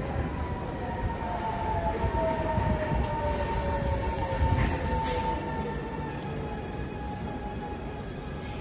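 Electric multiple unit running along a platform track, with a rumble from its wheels. Its motors give two whining tones that slowly fall in pitch.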